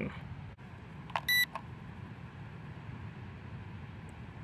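A single short electronic beep from the Eachine EX5 Pro drone's remote controller, a little over a second in. It acknowledges the stick command that starts the gyroscope (factory) calibration.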